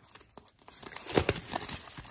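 Plastic wrapping on a sealed trading card box crinkling and tearing as it is cut open. It is quiet at first, then a quick run of crackles starts about halfway through.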